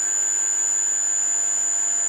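Five-horsepower three-phase electric motor running steadily on a variable-frequency drive, a constant hum with a high steady whine. It is turning, in the owner's view, slower than its rated 1450 rpm, which he puts down to possibly wrong VFD settings.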